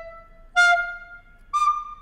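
Intro jingle music: a flute-like melody of separate held notes. One note fades away at the start, a second is held for about half a second, and a short last note bends slightly down near the end.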